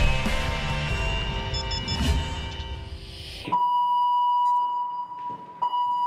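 Music fading out, then about three and a half seconds in a steady, high-pitched alarm tone sounds, breaks off briefly and sounds again: the offshore platform's general alarm calling personnel to muster for a drill.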